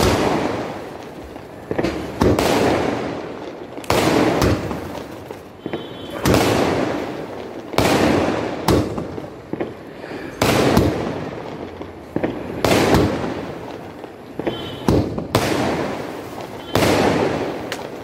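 A 30-shot sky shot fireworks cake (Elephant Brand 'Night India') firing in sequence: a sharp bang about every one to two seconds, sometimes two in quick succession, as each shell bursts overhead, each one dying away before the next.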